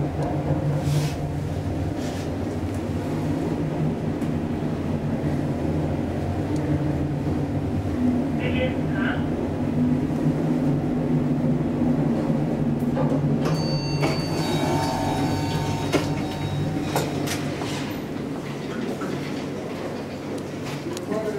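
Telescopic hydraulic elevator's pump unit running with a steady low hum while the car travels, easing off near the end. A cluster of higher ringing tones sounds about two-thirds of the way through.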